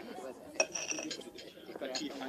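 A stemmed drinking glass set down on a stone mantelpiece: one clink about half a second in, ringing briefly, over low murmured voices.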